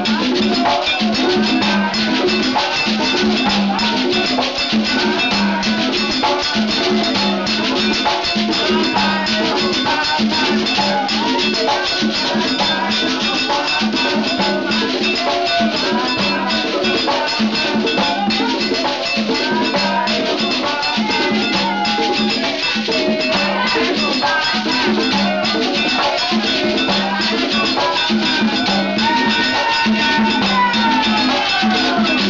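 Live Afro-Cuban Santería tambor drumming: hand drums, including a conga, played in a steady driving rhythm, with voices singing over the drums.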